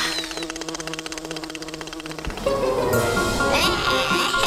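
Cartoon buzzing of a robot mosquito's wings for about two seconds over background music. The buzz then gives way to music alone, with a short gliding vocal sound near the end.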